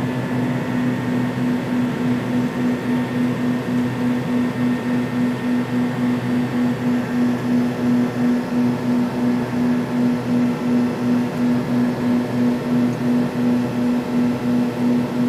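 Cabin noise of an American Airlines MD-80 climbing out: the drone of its rear-mounted Pratt & Whitney JT8D turbofans, a steady low hum that throbs about three times a second, over the hiss of airflow.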